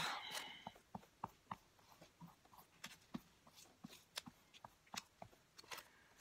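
Faint, scattered crackles and ticks of stiff, glue-dried collage paper being handled and pressed by hand.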